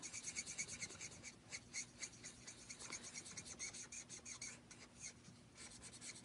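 Stampin' Blends alcohol-based marker tip rubbing on cardstock in faint, quick repeated strokes as colours are blended into a stamped flower.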